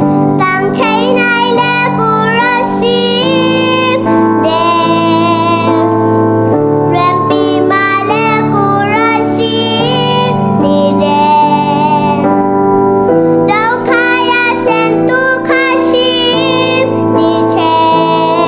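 A young girl singing a melody into a headset microphone while accompanying herself with sustained chords on a Yamaha MX88 keyboard.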